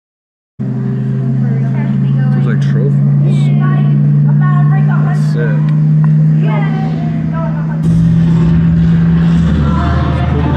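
A steady low engine-like drone with people's voices over it. The sound drops out completely for about half a second at the start, and the drone steps up a little in pitch near the end.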